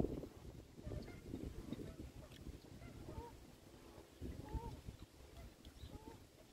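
A few short bird calls, about three and four and a half seconds in, over a faint rumble of wind on the microphone.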